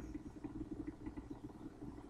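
Faint low background rumble, room tone with no distinct sound event.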